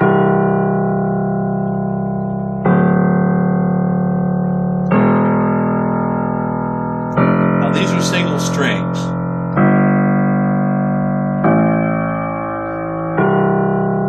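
Grand piano bass notes struck one at a time, seven strokes each left to ring and slowly die away, with a dark, resonant, deep tone.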